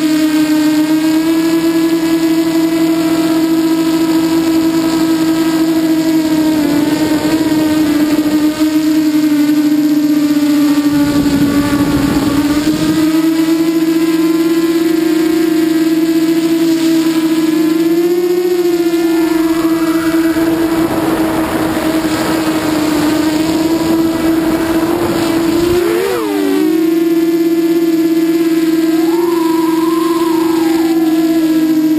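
Walkera Runner 250 quadcopter's brushless motors and propellers whining steadily, heard from the GoPro mounted on the drone. The pitch shifts slightly as the throttle changes, with a sharp wobble near the end, and several stretches of wind noise rush over it as it flies.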